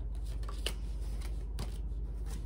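Tarot cards being handled and shuffled: a few light, sharp card clicks and snaps, the sharpest a little under a second in, over a steady low hum.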